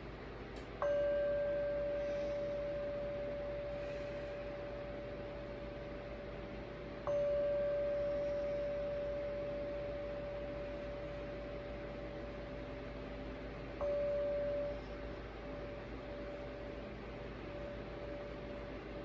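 A small brass singing bowl struck three times with a wooden mallet, about six to seven seconds apart. Each strike rings with one clear, steady tone and a fainter higher overtone that slowly fades; the third ring is damped after less than a second, leaving only a faint tone.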